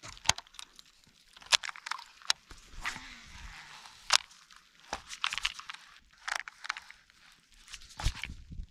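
Scattered sharp clicks and rustles from handling a baitcasting rod and reel close to the microphone during a cast and retrieve.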